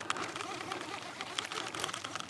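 A baitcasting reel and braided line being handled, making a busy run of small clicks and ticks while a tangle is picked out.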